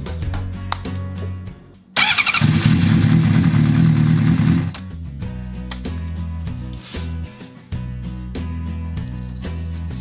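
Honda CBR600RR inline-four engine started about two seconds in, running loudly for under three seconds and then shut off. It is a quick start with the oil drained, to push leftover oil out of the engine.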